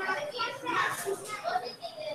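Children's voices chattering, several talking at the same time.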